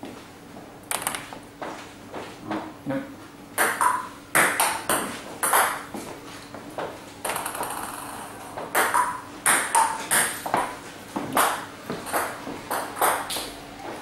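A table tennis ball clicking in a string of sharp pings, in quick groups of two or three. It bounces on the table and is struck by the bats as balls are fed one at a time and hit back with forehand drives.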